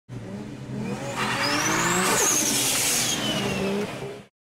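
Logo-sting sound effect of a car engine revving: the engine note rises over the first two seconds, with a rushing whoosh in the middle and a high whistle that falls away after it.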